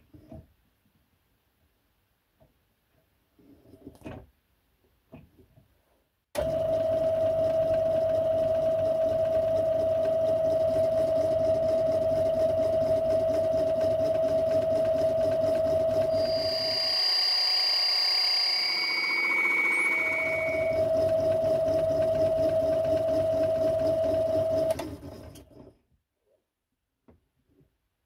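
A small metalworking lathe starts about six seconds in and runs steadily with a motor whine while the tool takes light cuts on a spinning copper disc; partway through, a high-pitched squeal as the tool scrapes the copper, then the lathe stops near the end. The cut is still intermittent: the tool is not yet touching the disc all the way around. Before the lathe starts, a few faint clicks as the chuck is turned by hand.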